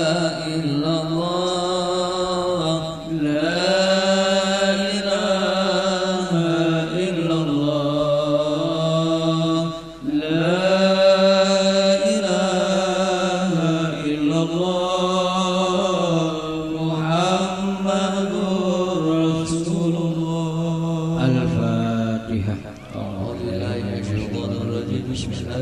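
A man's voice chanting a prayer in long, drawn-out melodic phrases into a microphone, with brief pauses for breath about three and ten seconds in.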